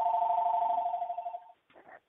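An electronic telephone tone on the phone line: two steady pitches sounding together for about two seconds, then cutting off suddenly.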